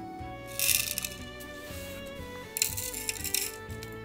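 Background music, with two short bursts of small hard grains rattling into a small wooden bowl: peppercorns and coarse salt being dropped in, the second burst longer.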